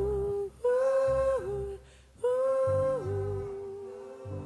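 Live band music: a voice hums a wordless phrase three times over low bass notes. Each phrase is a long held note that drops down a step. The last one fades away near the end.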